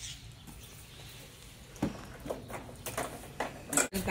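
A few light clicks and knocks as a key is worked in an electric scooter, over quiet outdoor background.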